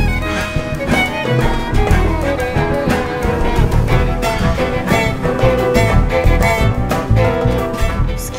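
Jazz chamber ensemble playing: bowed strings (violin, viola and cellos) with piano, drums and hand percussion, the strikes of the percussion running steadily under the held string notes.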